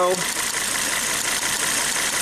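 Volvo S60 turbo's five-cylinder engine running rough with a misfire. Its note is unchanged with the number-one ignition coil pulled, the sign that cylinder one is already dead.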